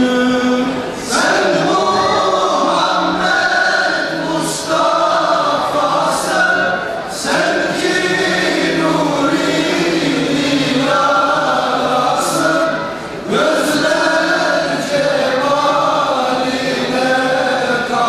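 Men's choir singing a Turkish ilahi (Islamic hymn) in several voices. A single held note gives way to the full choir about a second in.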